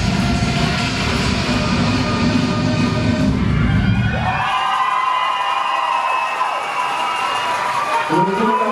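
Electronic dance music for a majorette drill routine, with a heavy beat that stops about halfway through; spectators then cheer with high, wavering screams.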